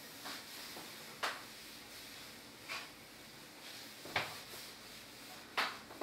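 Chalk on a blackboard: five short, sharp taps or scrapes spread a second or so apart, with faint room hiss between.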